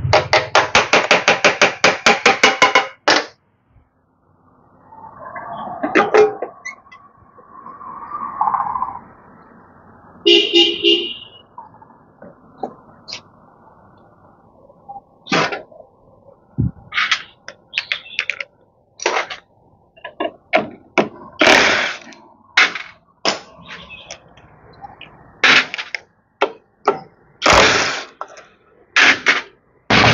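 Workshop tool and metal-part sounds while a Honda Vision 110 scooter's clutch side is being taken apart. It begins with a rapid run of sharp strokes lasting about three seconds. Then come scattered clicks, clinks and knocks of tools and parts, with a brief ringing tone about ten seconds in.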